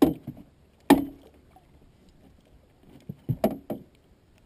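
Sharp knocks and thumps on a fishing boat's deck and hull, with light clatter, as a person moves about on board: one at the start, one about a second in, and a quick run of three near the end.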